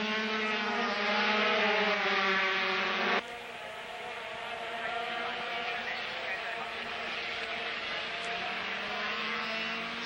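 A pack of 125cc single-cylinder two-stroke Grand Prix racing motorcycles (Honda RS125 and Yamaha TZ125) running at high revs. The sound is loud for about three seconds, then cuts suddenly to a quieter, more distant engine sound.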